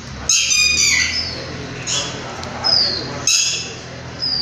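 Birds squawking: several harsh, high calls, some falling in pitch, repeated about four times.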